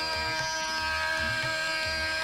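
Hindustani classical accompaniment between sung phrases: a steady sustained drone with soft, evenly spaced low tabla strokes, about two a second.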